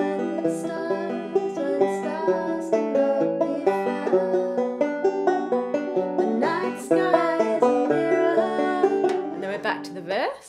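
Resonator banjo fingerpicked in a steady rolling pattern, a quick run of plucked chord arpeggios that thins out and gets quieter in the last second.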